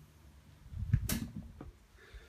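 Handling noise: a few soft knocks and rustles with one sharp click about a second in.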